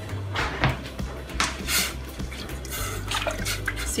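Background music under a spatula stirring vinegar-and-salt brine in a stainless-steel pot: a few short swishes of liquid and light knocks of the utensil against the metal.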